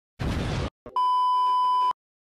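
A short burst of hissing noise, then a steady censor-style bleep tone lasting about a second that cuts off abruptly.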